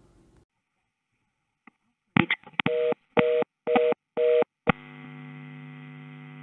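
Telephone line recording of a busy tone. A couple of line clicks come first, then four beeps of a two-tone busy signal at about two per second. A click follows and the line then holds a steady buzzing hum. This is the 'busy tone type 1' cadence that the PBX's FXO port must detect as the far end hanging up.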